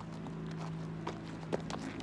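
Faint footsteps and shuffling on grass, with a steady low hum underneath and one sharper tap about one and a half seconds in.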